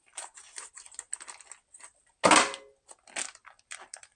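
Plastic vacuum packaging on a rack of beef ribs crinkling and crackling in irregular bursts as it is cut open with kitchen shears and the meat is pulled free. One much louder, sharp noise comes a little past two seconds in.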